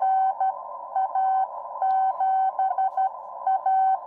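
Morse code (CW) signal received on the 40 m band through a Xiegu X6100 HF transceiver's speaker: a single steady-pitched tone keyed in slow dots and dashes, about 12 words per minute, over steady receiver hiss narrowed by the CW filter.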